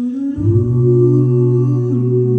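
Six-voice a cappella group singing a sustained chord. After a brief break, a new chord begins, and a low bass voice comes in about half a second in and holds under the upper voices.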